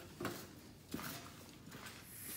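Mostly quiet with two faint, short knocks, about a quarter second and a second in.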